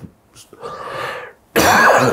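A man coughs into his hand: a softer rasping breath about half a second in, then one sudden loud cough near the end.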